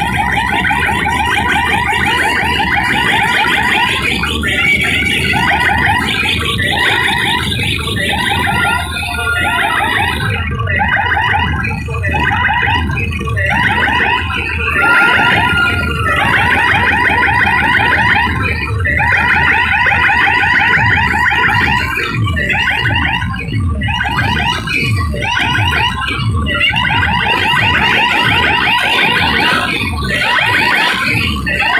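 Loud DJ music through a large sound system: a rapidly pulsing, alarm-like synth siren over heavy bass. From about ten seconds in, repeated falling bass sweeps run under it.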